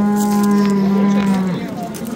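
A cow mooing: one long, steady call that ends about a second and a half in.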